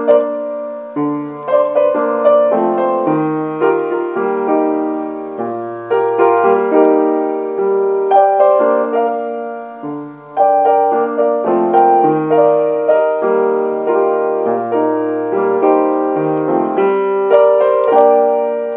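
Solo piano being played: chords and melody notes struck and left to ring over low bass notes, with a brief dip in loudness about ten seconds in.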